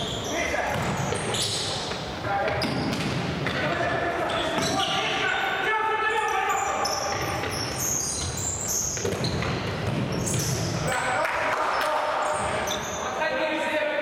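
Futsal game sounds in a large, echoing sports hall: players' shouts and calls, with the repeated thuds of the ball being kicked and bouncing on the court floor.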